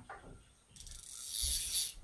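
Sage ESN fly reel's spool spinning as fly line is pulled off it, with the drag dial turned down: a high, fast whirring buzz lasting about a second. The reel pays out line easily, showing the light drag setting.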